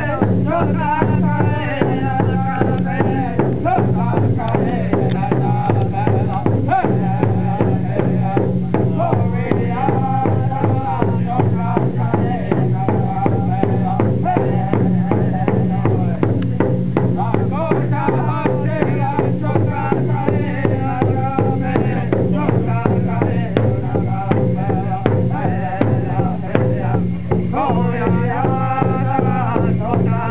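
Powwow drum group singing a victory song: several singers strike a large shared hand drum with drumsticks in a steady, even beat while their voices carry long, wavering sung phrases over it. The singing swells strongly again near the end.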